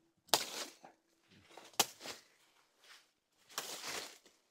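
Footsteps crunching through dry leaf litter and undergrowth: several separate rustling crunches, with one sharp click about halfway.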